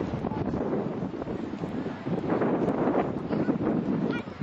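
Wind buffeting the camcorder's microphone: a rough, rumbling noise that grows louder about halfway through.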